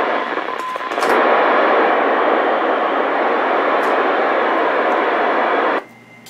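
FM two-way radio static: a loud, steady hiss from the VHF transceiver as it receives the repeater's signal, cutting off abruptly near the end as the signal drops and the squelch closes.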